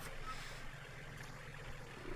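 Faint, steady engine noise from a compact diesel tractor working at a distance.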